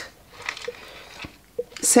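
Faint rustling and light taps of a cardboard product box being handled and turned in the hands. A spoken word begins near the end.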